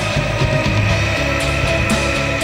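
Doom metal song playing: heavy distorted electric guitar over low sustained bass notes, with sharp drum and cymbal strokes.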